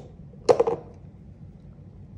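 A brief clatter of small hard objects (a plastic model ball, small magnets and pliers) being handled and set down on a whiteboard, a quick cluster of clicks about half a second in, over low room hiss.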